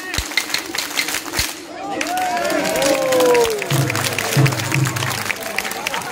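A festival crowd clapping together in rhythm, led by hyoshigi wooden clappers, in the manner of a tejime ceremonial hand-clap. About two seconds in, the clapping gives way to long shouted calls that fall in pitch.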